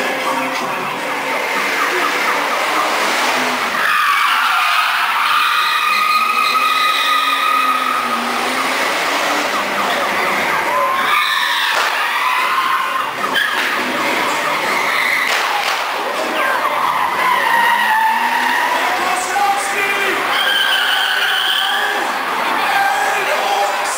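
Stunt cars driving hard on a show set, their tires squealing and skidding repeatedly in high sliding screeches over engine noise.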